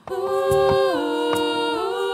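Several voices singing wordless held notes in close harmony, the chord shifting about a second in and again near the end, over light regular percussive strokes from the accompaniment.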